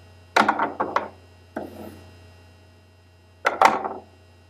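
A few knocks and taps in three short clusters, about half a second in, near the middle and near the end, over a steady low electrical hum.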